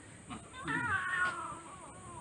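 Siamese cat giving one long, drawn-out meow that rises briefly and then slides down in pitch, a protest while she is held up for a claw trim.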